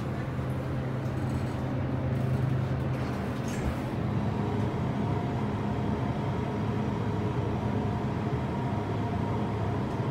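Steady low machinery hum inside an MEI hydraulic elevator car, with a brief thump a little before four seconds in.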